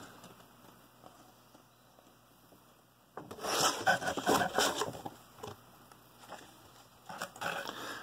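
A large paper instruction booklet being handled and opened out: paper rustling and rubbing under the hands, loudest for about two seconds near the middle, with softer rustles near the end.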